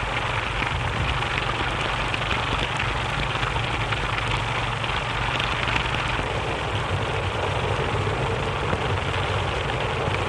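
Heavy rain falling in a steady downpour, with a steady low rumble underneath, on an early sound-film track.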